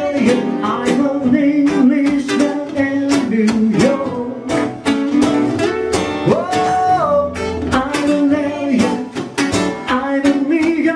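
Acoustic guitars playing an instrumental passage: plucked accompaniment under a melodic line that slides up and down in pitch.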